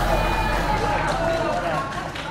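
Faint, overlapping voices in a TV studio: murmured speech and low audience chatter between the louder exchanges.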